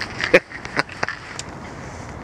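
A few scattered clicks and knocks, the loudest about a third of a second in, from a ratchet wrench being fitted and worked on the 19 mm serpentine belt tensioner bolt. A low background follows.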